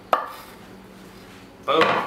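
One sharp clack as diced red onion is scraped with a knife off a wooden cutting board into a glass mixing bowl of mashed avocado, followed by quiet kitchen room tone.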